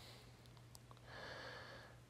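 Near silence: room tone with a low steady hum, and a faint short hiss lasting under a second about a second in.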